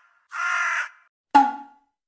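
A man belting a mock high note: a short, strained, hoarse cry about half a second long. About a second and a half in comes a single sharp knock with a short ringing tail.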